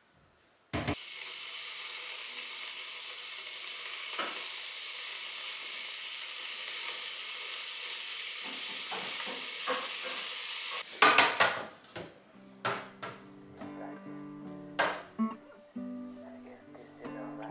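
Bosch DesignLine electric kettle switched on with a sharp click, then a steady hiss as the water heats. A quick run of clicks about eleven seconds in, followed by soft guitar music.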